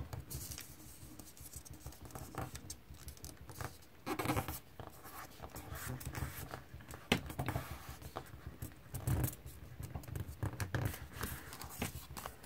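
A square of origami colour paper being folded and creased by hand on a tabletop: irregular soft rustles and scrapes of fingers pressing and smoothing the folds, with a few louder rustles about four, seven and nine seconds in.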